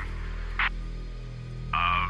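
Low, steady background music drone, with a brief crackle of radio static just past half a second in. A voice comes through a radio near the end.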